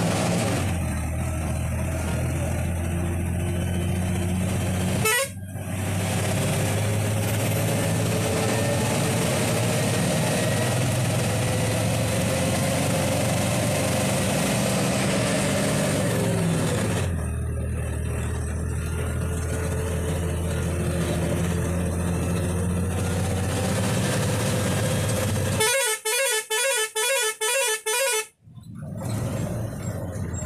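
Bus engine running steadily under load on a winding climb, its note shifting once partway through. Near the end the horn sounds a quick series of about seven short, pulsing blasts, as is usual before a blind hairpin bend.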